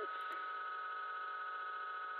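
A steady, even hum made of several held tones, the background noise of the room, with nothing else sounding.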